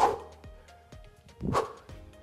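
Two short, sharp vocal bursts of effort from a man doing skater hops, about a second and a half apart, over steady background music.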